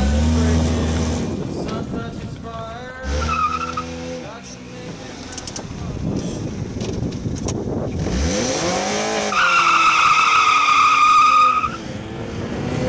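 An old Honda Accord's engine revving up and down in several bursts. Near the end comes a sustained high-pitched tyre squeal lasting about two seconds, which is the loudest sound.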